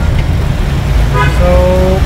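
Low, steady rumble of a moving vehicle heard from inside, with a vehicle horn sounding one steady note for nearly a second, starting a little past halfway.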